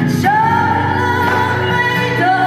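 A live folk-rock band playing, with acoustic guitar, electric guitar, drums and keyboard. A long high note, sung or played on lead guitar, comes in just after the start and is held.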